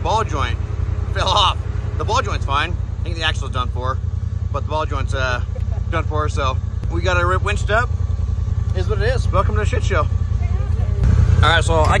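A Polaris side-by-side UTV engine idling steadily, a low, even rumble, with several people talking over it.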